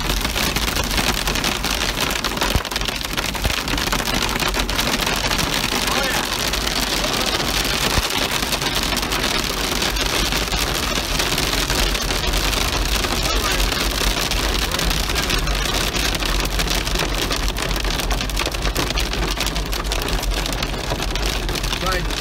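Heavy rain pelting the roof and windshield of a moving car, heard from inside the cabin: a steady, dense patter over the low rumble of the car and its tyres on the wet road.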